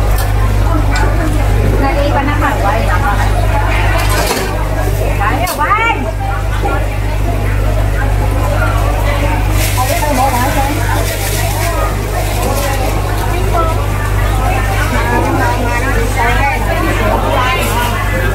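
Busy wet-market stall: people talking in the background over a steady low hum and the bubbling of aerated live-seafood tanks. About ten seconds in, a stream of water splashes briefly as a plastic basket of shrimp is tipped into a plastic bag.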